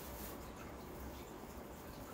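Quiet room tone: a faint, steady low hum with no distinct sounds.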